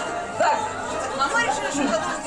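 Voices talking over one another in a large room.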